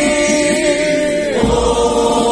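Mixed choir chanting an Orthodox hymn while walking. They hold one long note, then step down to a lower note near the end.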